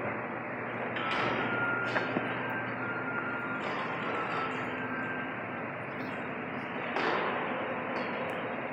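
Steady background noise of a large stone-walled hall, with a faint knock about two seconds in.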